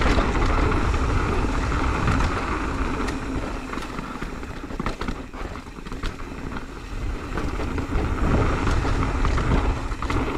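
Wind buffeting the camera microphone on a mountain bike descending a dirt trail, with tyre noise on the dirt and scattered small clicks and rattles. It eases off about halfway through, then rises again.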